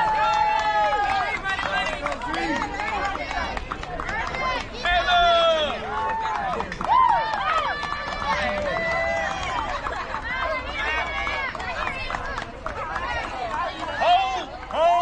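Many high-pitched young girls' voices talking and calling out over one another, a crowd's overlapping chatter with no single voice standing out.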